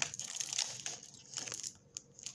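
Rustling as a hand rummages through medicines in a small zippered pouch, dying away in the second half.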